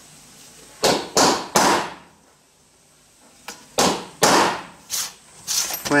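Ball-pein hammer striking a center punch on small steel plates, marking hole centres for drilling: sharp metallic taps, each ringing briefly. There are three loud ones in the first two seconds, then about five more, some lighter, a little later.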